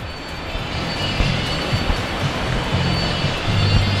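Steady rushing roar of airport traffic and aircraft noise, with low bass notes of music shifting underneath.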